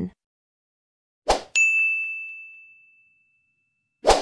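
Sound effects from a like-and-subscribe animation. A brief swish comes about a second in, then a bright bell-like ding rings out and fades over about a second and a half. Another swoosh starts right at the end.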